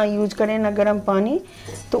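A woman talking for about a second and a half, then a short pause.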